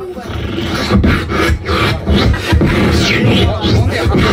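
Beatboxing into a handheld microphone: a rhythmic beat of low kick-drum-like thumps and sharp snare-like hits made with the mouth, with a gliding vocal whine about three seconds in.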